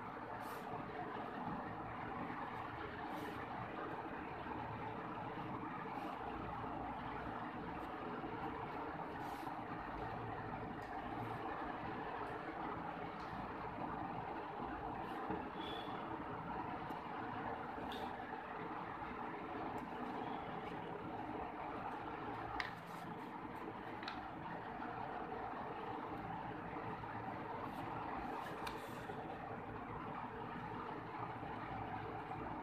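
Steady background hum and hiss, with a few faint light clicks as wooden ice-cream sticks are handled and set down on a paper worksheet.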